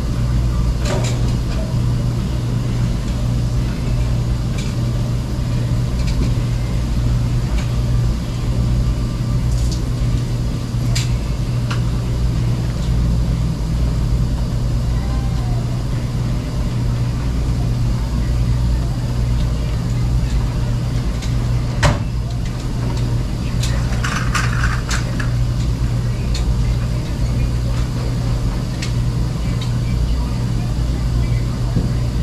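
Steady low hum of commercial laundromat washers and dryers running, with scattered clicks and clatter and one sharp knock about 22 seconds in.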